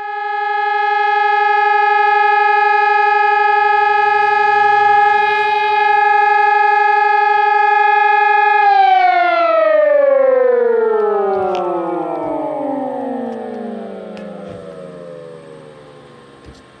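Fire station alarm siren sounding to call out the volunteer firefighters. It holds one steady pitch for about eight seconds, then slides steadily down in pitch and fades away.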